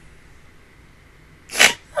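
A voice giving a short, sharp breathy burst, like a gasp, about one and a half seconds in, then, at the very end, the start of a loud "ah!" cry that falls in pitch.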